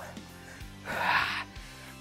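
A man's single heavy breath, a gasp about a second in, as he is winded after a hard exercise set, over quiet background music.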